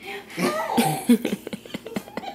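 Short bursts of voice sounds without words, loudest about a second in, with a few sharp clicks among them.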